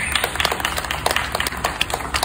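Scattered hand claps from an audience: a loose, irregular patter of sharp claps over low crowd and outdoor rumble.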